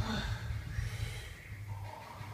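A lifter breathing hard, with a noisy exhale early on, while straining through a heavy barbell bench press (board press) rep, over a low steady rumble.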